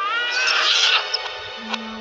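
Cartoon soundtrack played in reverse: a high, squealing cry that rises in pitch over about half a second, with music under it and a low steady note near the end.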